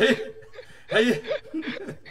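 A man chuckling in several short bursts of laughter.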